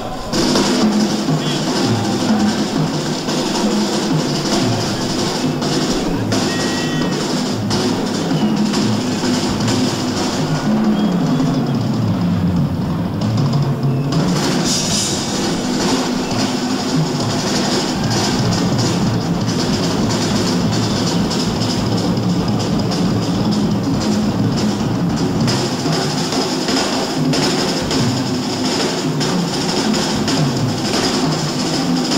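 Live drum kit solo: fast, dense playing on toms, snare and bass drum with rolls, steady in level. A low tone sinks and rises back about halfway through.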